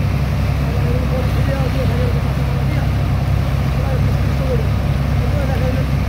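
The engine of a sand-unloading dredger pump runs at a steady, unbroken drone, with water from the pump's hoses spraying onto the sand.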